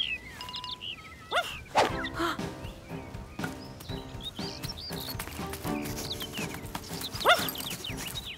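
Cartoon background music, with a dog's short rising and falling cries over it a few times, the loudest near the end.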